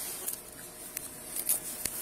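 Clothing and gear rustling close to the microphone, with a few light clicks in the second half.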